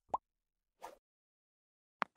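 Sound effects of a subscribe-button pop-up animation: one short pop that rises in pitch just after the start, then a fainter brief swish a little before a second in.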